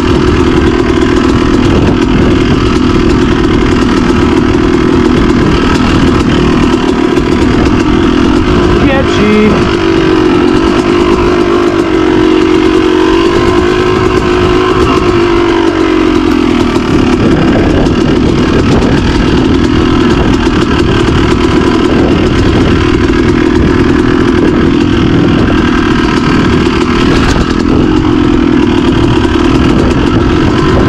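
Yamaha YZ250 two-stroke dirt bike engine running under the rider on a trail, heard on board, its pitch swelling and falling with the throttle, most of all in a wavering stretch about a third of the way in.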